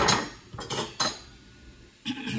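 Metal kitchen utensils clinking and knocking against a cooking pot: a few sharp, ringing strikes in the first second.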